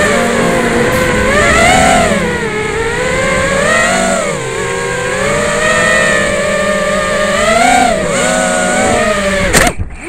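Brushless motors and propellers of an FPV quadcopter with Emax 2205 motors whining, the pitch rising and falling again and again with the throttle. The sound drops away abruptly near the end.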